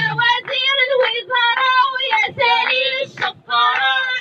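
A woman chanting protest slogans in a sing-song rhythm through a handheld loudspeaker microphone, in short repeated phrases with a brief pause about three seconds in.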